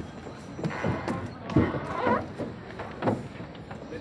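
Several irregular thumps and knocks as a person climbs out of an aluminium rowboat onto a wooden dock, with the boat bumping against the dock.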